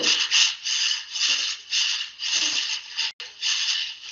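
Scraping and rubbing, in short bursts about twice a second, as a mock-up rotor disc is worked up off its tube shaft by hand, heard through a video call; the sound cuts out briefly a little after three seconds.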